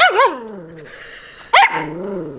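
Small dog barking at a toy held in front of it: two quick high yips at the start, then one more sharp bark about one and a half seconds in.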